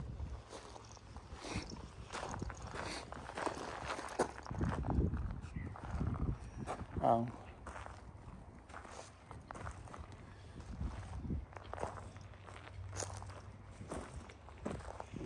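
Footsteps on a gravel driveway, irregular crunching steps, with a short murmur of a voice about seven seconds in.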